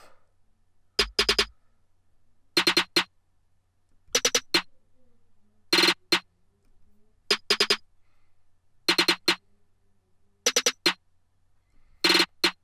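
Programmed trap snare hits from a drum-machine beat play back in quick groups of three or four, about every one and a half seconds. A low-cut EQ filter is being slowly raised on the snare group toward about 150 Hz, stripping out the snare's unneeded low-end rumble: the deep part of the hits is there at first and falls away after the first group.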